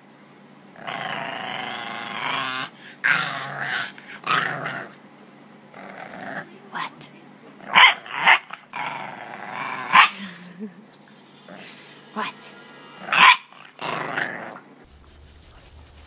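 An English bulldog puppy barking and grumbling in a string of drawn-out, howl-like calls and short sharp barks. The loudest barks come a couple of seconds apart in the middle and near the end, and the calls stop shortly before the end.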